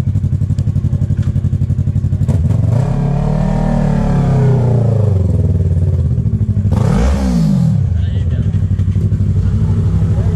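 Yamaha MT-03 motorcycle engine idling close by with a pulsing beat, among other motorcycles. An engine revs up and back down smoothly about three to five seconds in, and a short, sharp rev comes about seven seconds in before the bikes settle back to idle.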